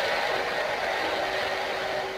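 Steady rushing background noise with a faint constant hum, even in level throughout.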